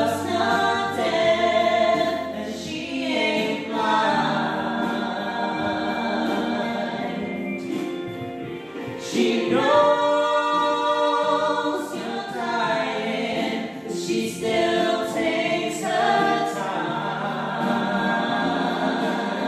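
A man and a woman singing a musical-theatre love duet, with held notes throughout.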